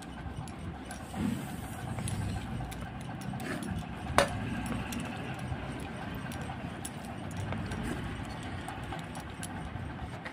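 A hand mixing rice and curry on a plate: small scattered clicks and taps over a steady low room hum, with one sharp click about four seconds in.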